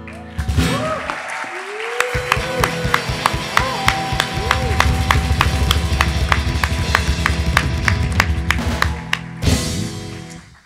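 A live rock band's outro after the last sung line: a steady percussion beat of about four hits a second, with cheering and applause over it. A loud full-band final hit comes near the end.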